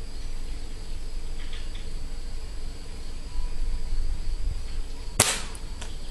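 A single sharp pellet-rifle (air rifle) shot about five seconds in, with a short ringing tail, followed by a faint click a little over half a second later.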